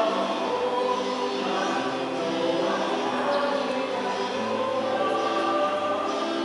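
Church choir singing a hymn in held, sustained notes.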